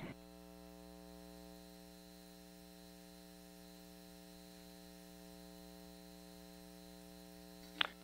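Faint, steady electrical mains hum on the broadcast audio line: a low, unchanging hum with several even overtones above it.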